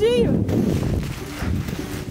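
A man's brief cry at the start, then the swish and crunch of deep snow and a padded snowsuit as he sweeps his arms and legs to make a snow angel.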